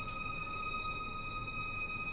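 String orchestra holding one soft, high note on bowed strings, steady and unchanging.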